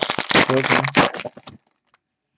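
Foil trading-card pack wrapper crinkling and crackling as hands open it and handle the cards. A few spoken words run over it, and it stops about one and a half seconds in.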